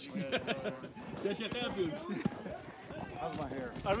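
Quiet voices talking in the background, with no clear non-speech sound.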